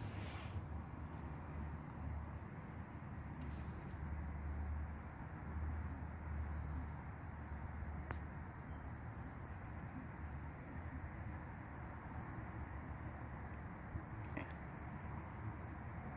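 Quiet ambient background with a thin, steady high-pitched pulsing trill throughout, over a faint low rumble; a music track fades out in the first half-second.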